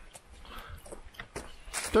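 Footsteps on a gravel forest trail, a few faint irregular steps, with a voice starting to speak near the end.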